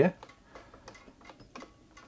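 Faint, irregular light ticking and clicking from the mechanism of an Elna Star Series Supermatic sewing machine as the shaft turns and drives the needle bar.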